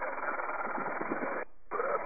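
Helicopter intercom with the headset microphone open, carrying a muffled, radio-like hiss of cabin noise. It cuts out for a moment about one and a half seconds in, then opens again.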